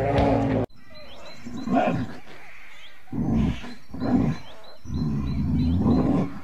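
A bear making a series of low, rough calls, one about every second. Small birds chirp faintly and high in the background. A music track cuts off abruptly less than a second in.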